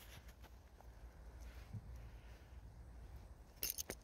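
Faint, low rumble of wind on the microphone, with a few short clicks near the end.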